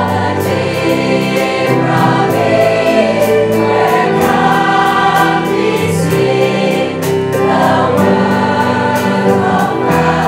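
Large mixed choir singing sustained harmonies, accompanied by keyboard and a drum kit keeping a steady beat on the cymbals.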